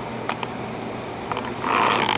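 Steady low mechanical hum of running machinery, with a few faint ticks and a short hiss-like noise near the end.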